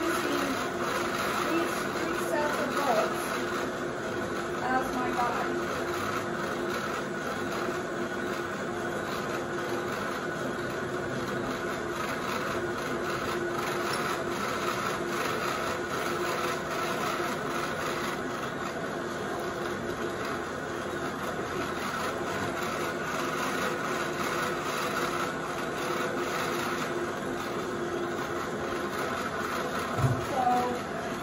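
Brother Rover fibre-processing machine running steadily with alpaca fibre feeding through: an even mechanical hum with several held tones.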